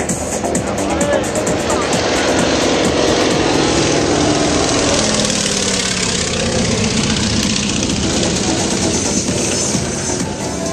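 Single-engine propeller biplane flying low overhead. Its engine and propeller noise builds over the first couple of seconds, and its pitch drops as it passes around midway. Background music plays throughout.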